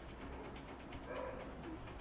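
Quiet room tone with a low steady hum, and a faint short sound about a second in.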